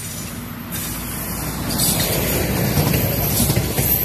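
A single diesel railcar running past close by, the wheel and engine noise growing louder and peaking in the last two seconds as it goes by.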